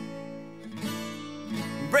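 Rock ballad passage without singing: guitar chords strummed a few times, about every 0.7 s, ringing on between strokes. A singer's voice comes in right at the end.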